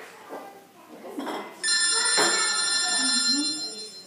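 A telephone ringtone: a steady electronic ring of several high tones that starts suddenly about one and a half seconds in and lasts about two seconds.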